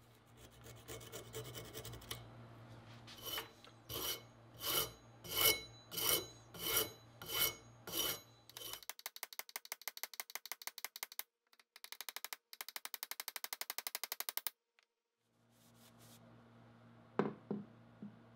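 Hand tool worked on the wedged end of a wooden hatchet handle: a stretch of rubbing, then about eight slow, even rasping strokes, then two runs of fast, fine strokes. A couple of light taps near the end.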